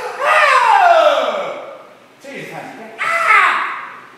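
A man's voice sliding steadily down in pitch over about a second and a half, then a shorter vocal rise and fall about three seconds in, in the manner of a voice-training glide.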